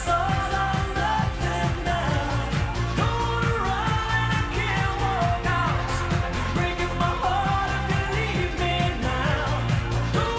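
Live pop-rock band music with a steady drum beat and a sung melody over it.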